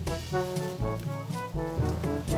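Background music: a melody of short, quick notes over a steady beat.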